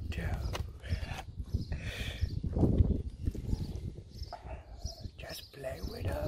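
A dog making short vocal sounds, over rustling and knocks from the dogs moving on the bed.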